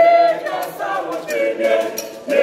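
Junior church choir of boys and girls singing together in mixed young voices, with a held note at the start.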